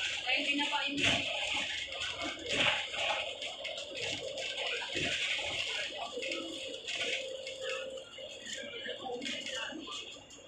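Indistinct voices talking inside a moving bus, too unclear to make out words.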